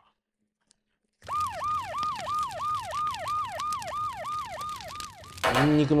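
Siren sound effect: a wailing tone that drops in pitch and repeats about three times a second, coming in suddenly after a second of silence. It is a comic edit marking how overwhelming the spiciness is.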